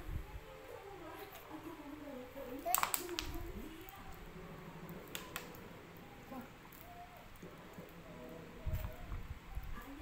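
Faint, indistinct talk in a small room. A couple of sharp clicks come about three seconds in, and low knocks come near the end.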